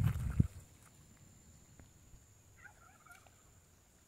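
Quiet open-air background: a few low thumps in the first half second, then a single faint warbling bird call about three seconds in.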